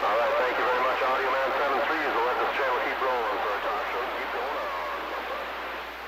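Another station's voice coming in over a CB radio speaker, thin and band-limited with steady hiss underneath, as from a weak long-distance signal.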